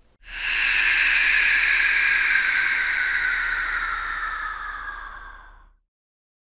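A long whoosh sound effect, a breathy rush of noise that swells in quickly, slides slowly down in pitch and fades away over about five seconds.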